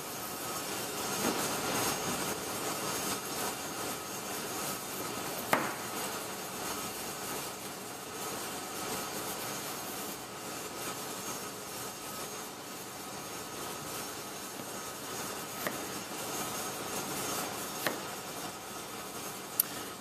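Chef's knife slicing through a raw potato and knocking on a plastic cutting board, with a few sharp taps as the blade reaches the board, over a steady background hiss.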